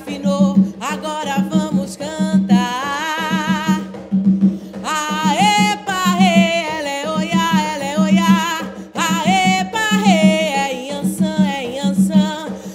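Woman singing a Umbanda ponto for Iansã in Portuguese, with long, wavering held notes, over a hand-played atabaque drum beating a fast, steady rhythm.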